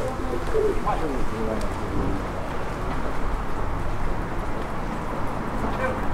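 A pigeon cooing in the first second or so, over a steady low street hum, with voices of passers-by in the background.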